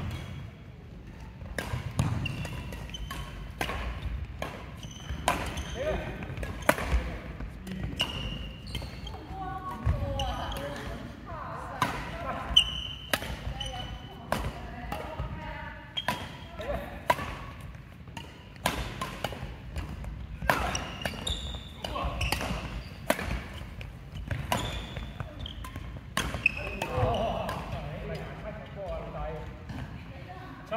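Badminton rally: sharp cracks of rackets striking the shuttlecock at irregular intervals, mixed with short high squeaks of sports shoes on a wooden sports-hall floor.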